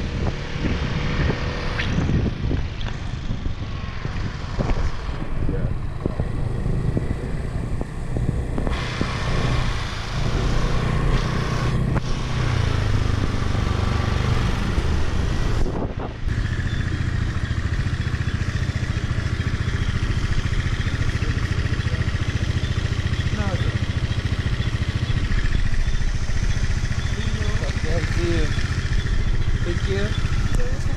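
Motor scooter ride with wind rushing over the microphone and the engine running underneath. After a sudden cut about halfway, a steady background din with muffled voices follows.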